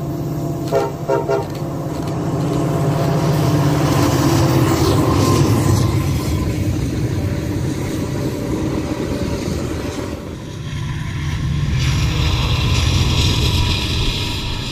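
CSX freight train: the diesel locomotive's horn gives a few quick short toots about a second in, then the locomotives pass close with a loud, building engine rumble. After a break near the end, the steady rumble and rattle of freight cars rolling by on the rails returns.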